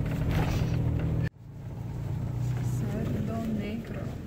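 Car engine and road noise heard from inside the cabin during slow driving, a steady low drone. It cuts out abruptly just over a second in, then fades back in, quieter.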